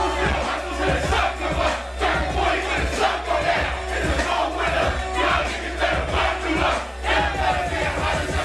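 A hip-hop beat played loud through a club PA, with heavy bass coming in right at the start and a steady beat about twice a second, as a crowd shouts along over it.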